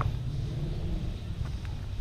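Wind buffeting the camera's microphone: a steady, uneven low rumble.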